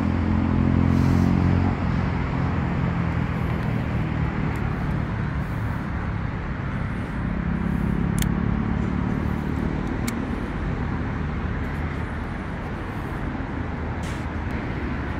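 Benelli TRK702X's 693 cc twin-cylinder engine idling steadily, its low hum strongest in the first two seconds and again around the middle.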